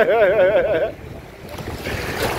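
Small waves washing over the shallows, with wind on the microphone. In the first second a voice is heard, drawn out and wavering in pitch.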